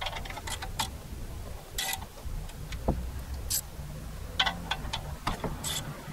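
Ratchet wrench clicking in short, uneven runs as a 7 mm socket loosens a rear brake caliper guide-pin bolt.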